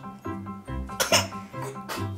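A toddler's short cough about a second in, over background music with a steady light beat; it comes after a sip from his sippy cup went down the wrong way.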